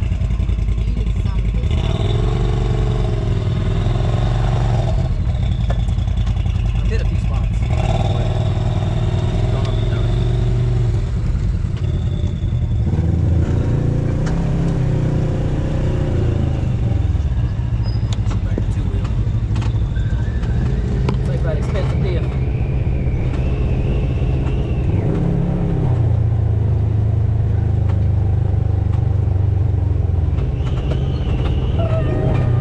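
Side-by-side UTV engine running on board while driving a rough trail, a loud, continuous drone whose pitch rises and falls with the throttle, climbing about halfway through and again near the end.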